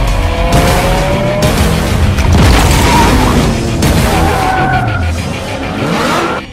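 A Lamborghini's engine revving with tyres skidding, under a music soundtrack.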